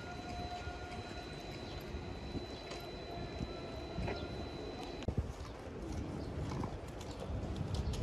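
Outdoor city street ambience: a low steady rumble of traffic and activity, with a faint high-pitched steady tone that cuts off about five seconds in and a few scattered clicks.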